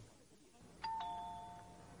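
Two-note ding-dong doorbell chime, a higher note followed at once by a lower one about a second in, both fading away: a visitor ringing at the front door.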